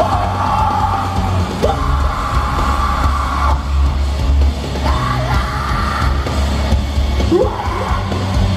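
Live heavy rock band playing at full volume, with drums, distorted guitar and a heavy bass low end, while the singer yells long held lines over it three times.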